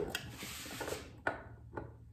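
Handling noises of pipe pliers and a threaded pipe fitting at a bench vise: a soft rub, then two short light clicks about a second and a half apart.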